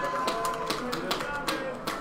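About six sharp, irregular taps over background voices, with a steady high tone that fades out about a third of the way in.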